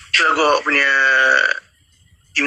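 A person's drawn-out vocal sound, about a second and a half long, settling into one steady held pitch.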